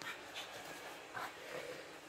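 Faint rustling of bed linen as a Pekingese noses and digs at a pillow, with a few short, soft scrapes.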